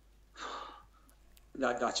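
A man's audible breath, drawn about half a second in during a pause in his speech, with his voice starting again near the end.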